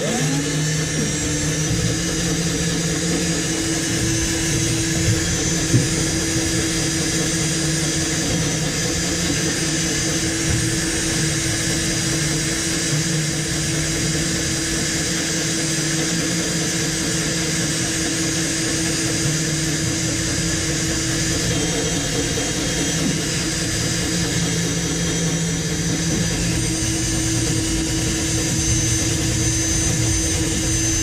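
Power drill running steadily under load as a combination drill-and-tap bit cuts a 1/4-20 threaded hole into the Jeep's steel frame rail. It starts abruptly and runs without stopping, its motor note sagging briefly now and then as the bit bites.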